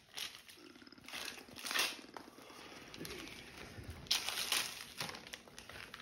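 Gift-wrapping paper being torn and crinkled by hand as a present is unwrapped, in several short rustling bursts, the loudest about two seconds in and again around four seconds in.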